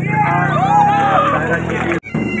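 Loud shouting voices with pitches rising and falling, one voice holding a long call in the middle, over a steady low hum.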